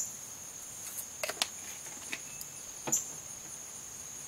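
Steady high-pitched chirring of insects, likely crickets, with a few light clicks and taps as a seasoning shaker is handled over the pot.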